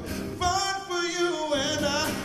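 Male soul singer singing a drawn-out, wavering vocal line with heavy vibrato, live, over strummed acoustic guitar.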